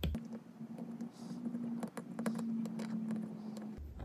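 Faint small clicks and taps as a soldering iron tip works a tiny surface-mount resistor loose on a small circuit board, over a faint steady hum.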